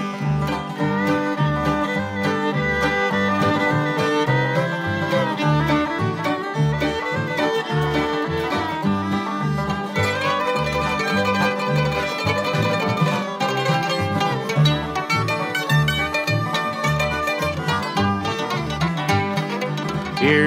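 Bluegrass band playing an instrumental break between sung verses: banjo and fiddle carry the tune over guitar and a bass playing a steady, even beat.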